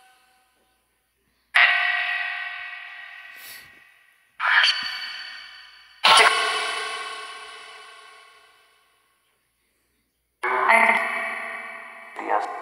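Necrophonic ghost-box app playing fragments from its sound bank through heavy echo and reverb: four ringing snippets, each starting abruptly and fading away over two or three seconds.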